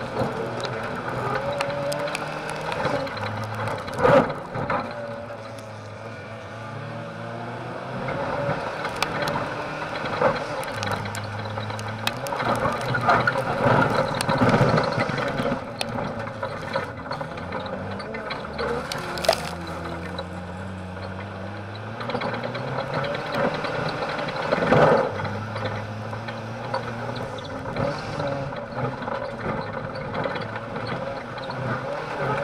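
In-cabin sound of an autocross car racing on dirt: the engine revs rise and fall through the gears, under a constant rattle and banging of the body and roll cage over the rough track. The loudest knocks come about four seconds in and again near twenty-five seconds.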